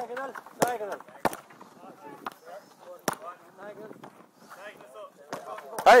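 Wooden hurleys striking sliotars on tarmac: a string of about six sharp, irregularly spaced knocks, with faint voices in the background.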